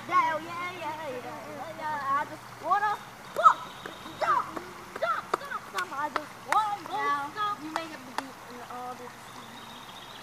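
A girl's voice singing a wordless tune over a steadily flowing river, with a few sharp splashes in the second half.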